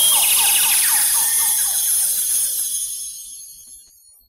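Synthesized sound effect closing a countdown intro: a bright hissing shimmer laced with quick, repeated falling zaps, fading out over about three seconds.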